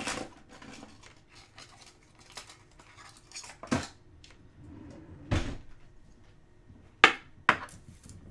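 Hard plastic card supplies clicking and knocking as they are handled, with two sharp clacks near the end as a box of Ultra Pro toploaders is picked up and moved.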